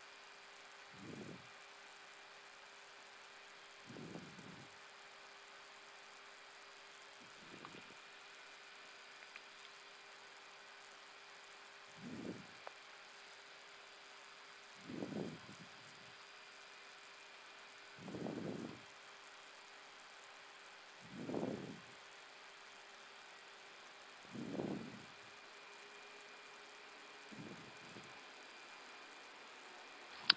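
Faint steady cockpit hum with a thin constant tone. A soft low puff of sound comes about every three seconds.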